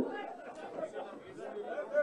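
Faint, indistinct chatter of many voices from a crowd, with no single voice standing out.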